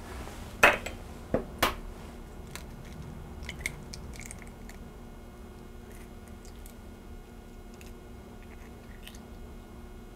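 An egg cracked on the rim of a glass bowl: three sharp taps within the first two seconds, then faint scattered clicks of eggshell halves as the yolk is passed between them to separate the white.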